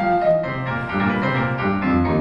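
Show-tune accompaniment led by piano, playing an instrumental passage between sung lines.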